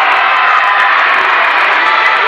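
Crowd of spectators and coaches shouting and cheering during a taekwondo bout, many voices overlapping into a loud, steady din.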